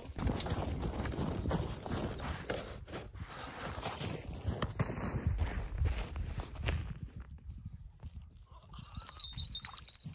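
Hurried footsteps crunching through snow, with rough rumbling handling noise, easing off to quieter scattered sounds about seven seconds in.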